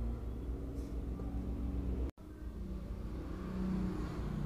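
Steady low background rumble with a faint hum, cut to silence for an instant about two seconds in at an edit.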